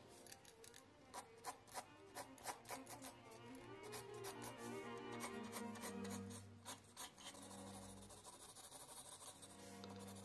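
2 mm mechanical pencil with 2B lead scratching across sketch paper in short, irregular strokes, over soft background music.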